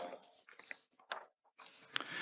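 A brief, quiet pause in speech at a lectern microphone: faint room tone with a few small clicks about halfway through and again near the end.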